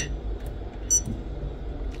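Low steady hum with one short, high tick about a second in: a key press on the Lewanda B200 battery tester's foil membrane keypad.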